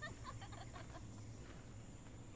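Faint bird calls: a quick run of short chirps, about seven a second, dying away within the first second, over a low steady hum.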